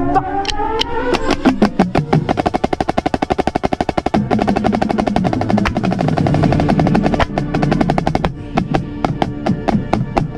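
Marching snare drum with a Remo Black Max head, played with sticks alongside a drumline: fast single strokes, then a sustained dense roll from about four to eight seconds in, then separate spaced strokes near the end.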